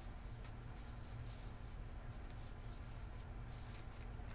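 Quiet room tone: a low steady hum with a few faint, scattered rustles and light clicks.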